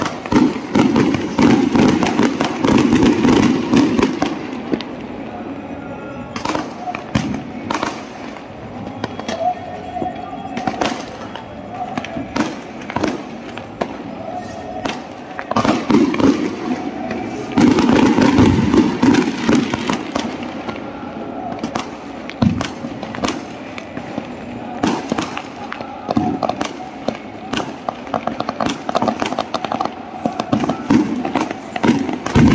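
An aerial fireworks display going off in a continuous barrage of sharp bangs and crackles, with louder, denser stretches near the start and about halfway through.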